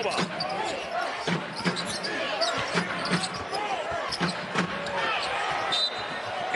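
A basketball being dribbled on a hardwood court, with irregular sharp bounces, sneakers squeaking in short rising-and-falling chirps, and an arena crowd murmuring underneath.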